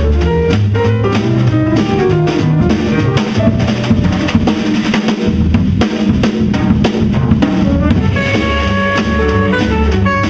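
Live small-group jazz: a saxophone playing over double bass and a drum kit, with sustained higher notes coming in about eight seconds in.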